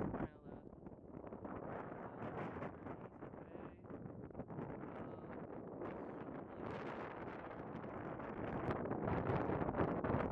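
Wind buffeting the camera microphone: a steady rushing that swells and dips, getting somewhat louder near the end.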